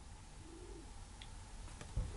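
Quiet room with one faint, low, rising-and-falling coo-like call lasting about half a second, shortly after the start.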